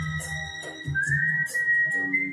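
A person whistling a melody through pursed lips over a karaoke backing track with a steady low beat. A held high note, then about a second in a note that slides up and holds.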